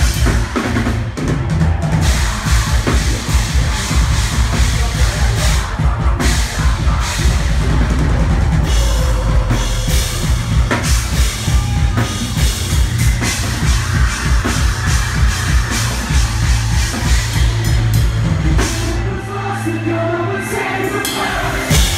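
A metalcore band playing live, with heavy drumming on bass drum, snare and cymbals under electric guitar. The heavy drumming drops away about a second before the end.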